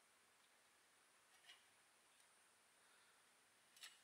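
Near silence: room tone, with two faint small clicks, one about a second and a half in and one near the end.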